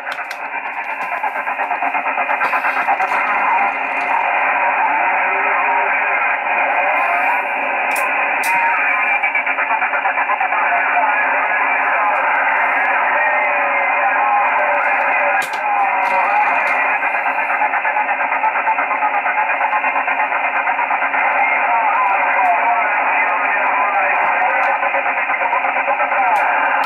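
Yaesu FT-847 transceiver's speaker receiving single-sideband from the LUSEX LO-87 satellite's linear transponder: a steady, narrow-band hiss, which is the noisy transponder, with a weak, distorted SSB voice from the other station coming through it.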